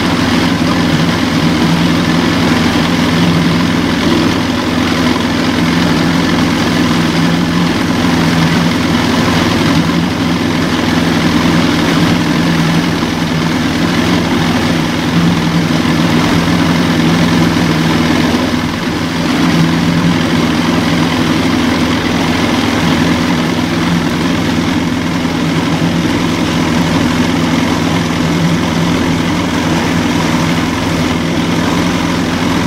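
Motorboat engine running at a steady speed, heard from on board: a constant low hum with a steady rushing noise over it.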